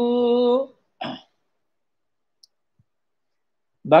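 A man's chanting voice holding one long steady note that breaks off under a second in, followed by a short throat noise, then near silence until his speech resumes at the very end.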